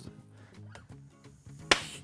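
A single short, sharp burst of compressed air from a dive bottle, fed through the airgun's filling probe, blowing the piston out of a Brocock Compatto's inlet valve near the end.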